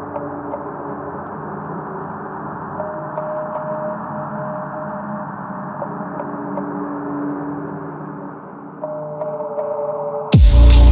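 Muffled ambient intro of a trap instrumental: sustained pad chords with the highs cut off. The chords shift about every three seconds, with faint crackle over them.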